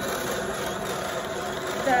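Brother Continuous Rover motorized drum carder running steadily, a hum made of several steady tones as its drums and rollers turn.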